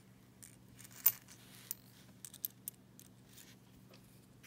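Nickels clicking against one another as a row of coins from a roll is pushed apart with a finger and one coin is picked out. There is one sharper click about a second in, then a few lighter clicks.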